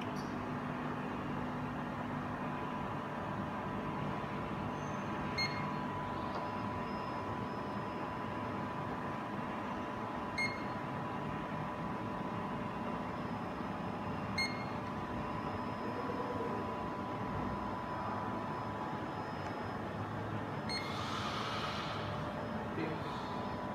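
Zeiss Contura G2 coordinate measuring machine running with a steady hum and a faint high whine as its probe head is driven by joystick. Three short beeps come about four to five seconds apart, the probe touching the part to record measuring points.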